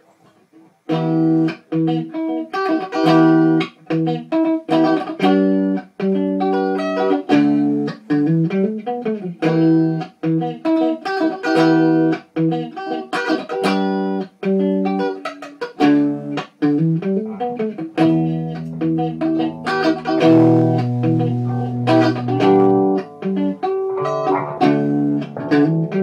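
A guitar played solo: a busy run of plucked notes that starts about a second in, with deeper sustained bass notes joining about two-thirds of the way through.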